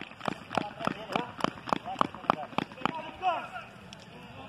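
A fast, even series of sharp claps or steps, about three or four a second, for about three seconds, followed by a short voice near the end.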